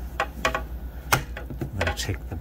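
A few sharp, irregular clicks and knocks from the plastic cabinet of a portable radio being handled, as the battery cover on its back is worked loose; the loudest click comes a little past one second in.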